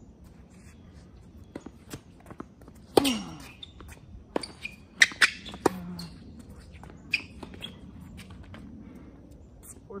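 Tennis rally on a hard court: a string of sharp pops as the ball is struck by the rackets and bounces, the loudest shots about three and five seconds in. A short falling vocal grunt comes with the shot about three seconds in.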